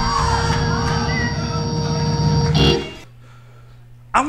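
Loud live band music with guitar, a held chord over heavy bass. It cuts off abruptly about three-quarters of the way through, leaving a low steady hum.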